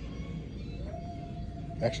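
Store background noise: a low steady rumble with a faint steady tone that glides up slightly about a second in and then holds.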